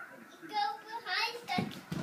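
A small child's short, high vocal sounds with no clear words, then quick footsteps on a wooden floor starting about a second and a half in.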